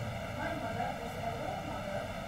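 Steady background hiss with a faint hum, with no distinct sound event.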